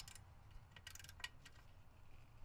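Faint clicking of a ratcheting wrench working a bolt on a rusty steel seat bracket, with a quick run of clicks about a second in.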